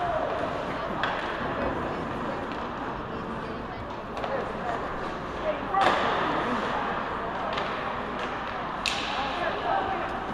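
Ice hockey play heard from the stands: a steady murmur of voices with several sharp clacks of sticks and puck striking, the loudest about six seconds in and another near nine seconds.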